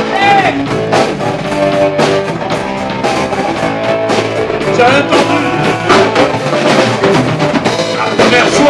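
Live rock band playing loudly on electric guitar and drum kit, with a little singing.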